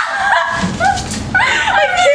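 Two young women squealing and laughing in high-pitched, gliding yelps as one gives in to the burning cold of salt and ice held in her closed hand.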